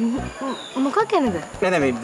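Speech: people talking in conversation.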